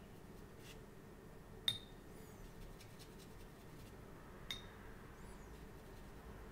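Two light glassy clinks almost three seconds apart, each with a short ring and a faint high squeak after it: a small paintbrush tapped against the rim of a glass water pot while it is being loaded for ink washes, over faint room tone.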